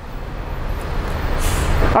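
Fuel rushing from a filling-station pump nozzle into a tall clear graduated cylinder, a steady gushing hiss that grows louder as the cylinder fills, over a low rumble.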